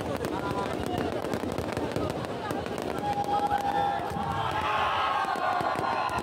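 Aerial fireworks going off with a dense run of small pops and crackles, over the shouting and chatter of a crowd.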